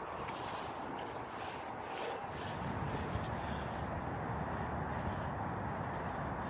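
Steady, even outdoor background noise, with a few faint taps in the first couple of seconds.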